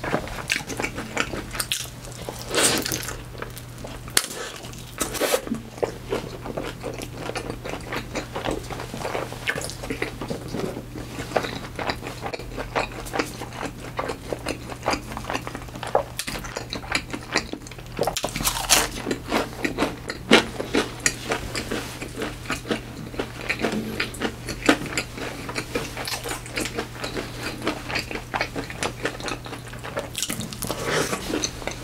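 Close-up eating sounds of crispy fried coconut shrimp and onion rings dipped in cheese sauce: bites and chewing with irregular crunching throughout, the loudest crunches about three seconds in and just before the twenty-second mark.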